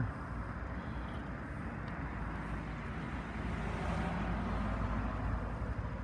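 Steady outdoor background noise with distant road traffic, swelling slightly in the middle.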